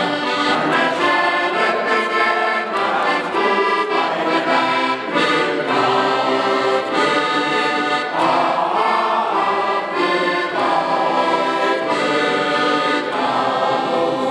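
Accordion playing a traditional tune, with a group of men singing along.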